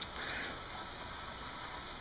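Steady rain falling.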